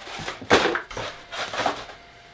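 A chair made of duct-taped cardboard toilet paper rolls collapsing under a person's weight: a sudden crunching crash about half a second in, then cardboard tubes clattering on the wooden floor.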